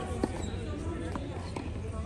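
Tennis ball bouncing on a hard court: one sharp knock about a quarter second in, then two fainter ones a little past a second in, under faint talk.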